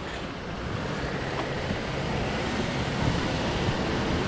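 Wind rushing over the microphone, mixed with steady road-traffic noise, a continuous rumbling hiss.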